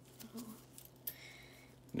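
Quiet handling: faint rustling of gloved fingers turning a coin over, with a soft "oh" near the start and a steady low hum underneath.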